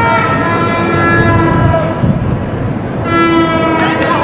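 Horns sounding long held blasts, one from the start to about halfway and a shorter one near the end, over a steady low rumble.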